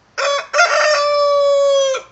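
Rooster crowing once, loud: a short opening note, then one long held note that falls slightly in pitch and stops sharply near the end.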